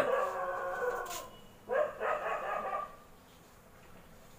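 An animal's drawn-out whining calls, two of them: the first fades over about a second and a half, and the second, shorter one comes about two seconds in.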